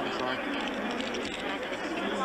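Several people talking at once, their voices overlapping into chatter.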